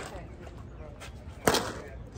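A single sharp bang about one and a half seconds in, with faint talk in the background.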